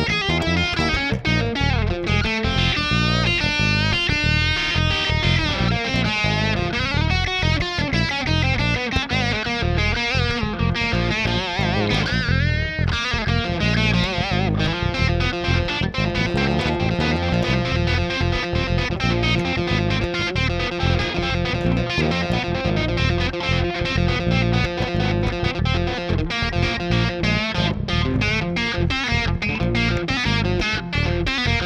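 Vola OZ electric guitar playing a lead line with bent, wavering notes over a bass guitar, through an amplifier; the notes turn to longer held tones about halfway through.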